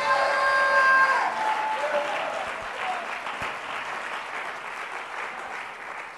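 A church congregation clapping and cheering, with a few voices shouting in the first second or so. The applause slowly dies down.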